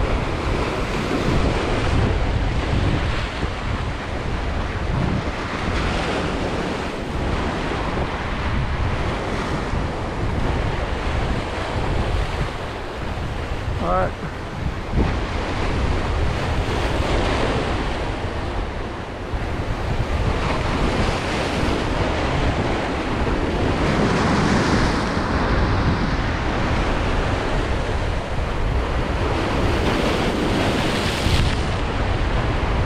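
Ocean surf breaking and washing over the boulders of a rock jetty, in surges that swell and ease every several seconds, with wind buffeting the microphone.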